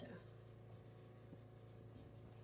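Faint dry-erase marker writing on a whiteboard, over a low steady hum.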